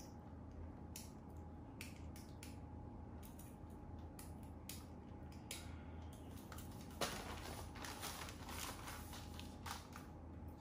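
Faint handling noise from a plastic-wrapped air purifier filter and the purifier's housing: scattered light clicks and plastic crinkles, with a sharper click about seven seconds in, over a low steady hum.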